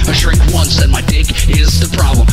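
Hip hop track: rapped vocals over a beat with heavy, pulsing bass.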